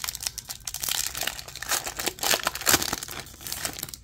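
Wrapper of a Garbage Pail Kids Chrome trading-card pack being torn open by hand, crinkling in a dense, continuous run of crackles.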